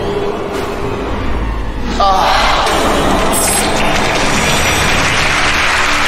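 Tense game-show music, then about two seconds in a studio audience's sudden groan of disappointment at the final missed throw, turning into steady applause.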